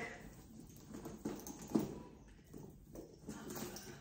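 A few soft, irregular knocks and handling noises, the kind made by moving about and handling a handbag and its strap.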